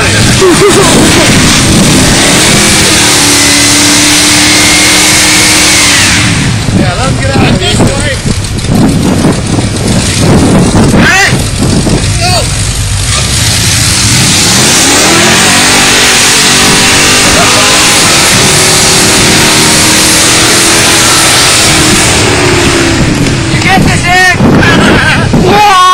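Dodge truck stuck in wet snow, its engine revved and held at high revs for several seconds while the drive wheels spin. This happens twice, with a rougher stretch between.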